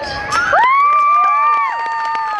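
Crowd cheering, with several high voices holding long shouts that start about half a second in and fall in pitch as they trail off.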